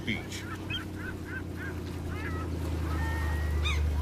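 Birds giving a quick run of short calls, about five a second, then a few scattered calls. Under them is a steady low drone that grows louder toward the end.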